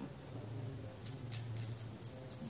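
Fingers working and pinching short hair at the scalp, making a quick run of crisp crackling ticks that starts about a second in, over a low steady hum.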